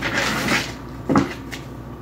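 Tarot cards being handled on a table: a short rustle of cards, then a single knock about a second in as the deck meets the tabletop.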